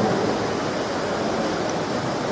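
Steady rushing hiss of background noise, even and unbroken, with no voice in it.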